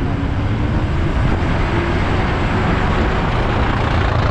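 Steady engine and road noise of a moving bus, heard from a passenger window with the rush of passing air.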